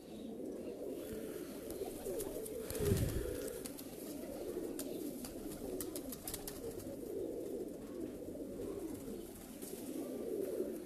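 Many domestic pigeons cooing at once, a continuous overlapping chorus of low, wavering coos. About three seconds in there is a brief low rumble.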